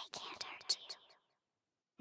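A ghostly whispered voice breathing the end of a phrase ("…can't"), a hissy whisper with a few sharp clicks that trails off about a second in, then dead silence.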